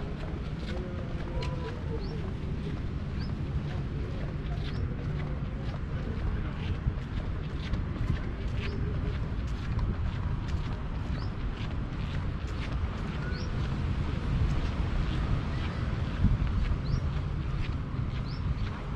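Wind buffeting a handheld camera's microphone with an uneven low rumble while walking outdoors, with many short high chirps from small birds scattered throughout.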